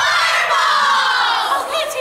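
A group of girls shouting a team cheer in unison: one long, drawn-out shout that slides down in pitch and fades about a second and a half in.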